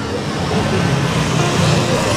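Cordless electric hair clipper running steadily as it shears through a man's long hair.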